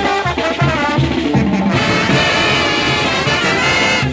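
Brass band playing live: trumpets and trombones over a steady beat of low brass and hand drums. About halfway through, the horns move into long held high notes.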